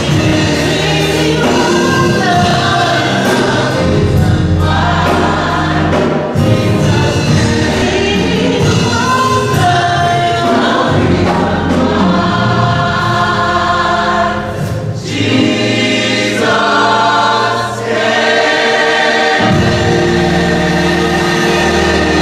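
Gospel choir of mixed men's and women's voices singing, ending on long held notes near the end.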